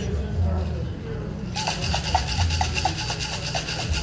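Metal cocktail shaker tin being shaken: a rapid, rhythmic rattle that starts about a second and a half in and runs on.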